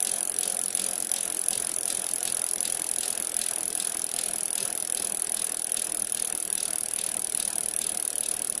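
Bicycle freewheel hub clicking in a fast, even ratchet as the wheel coasts, starting suddenly and running steadily.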